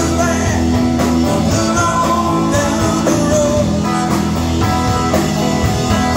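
Live rock band playing a rock and roll number at a steady, loud level: electric guitars, bass, drums and keyboard, with a singing voice.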